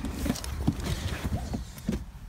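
A few short knocks and rustles from someone getting into a car's seat and handling the phone, over a steady low rumble.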